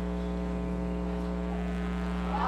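Steady electrical mains hum from the stage sound system: a buzz of one unchanging pitch with its overtones.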